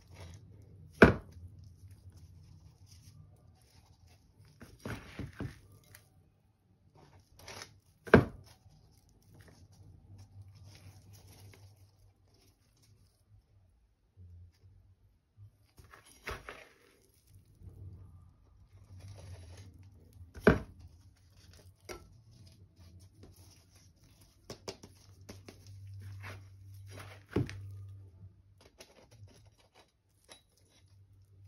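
Plastic hand scoop digging and scraping through dry potting mix of garden soil, rice husk, perlite and coco peat in a plastic bucket, in short scratchy bouts, with four sharp knocks: about a second in, about eight seconds in, about twenty seconds in and near the end.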